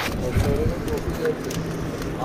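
Indistinct voices talking in the background over a steady low rumble of on-location noise.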